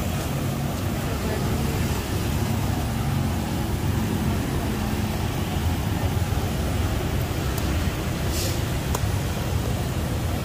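Steady low rumble of road traffic running on without a break, with a few faint clicks near the end.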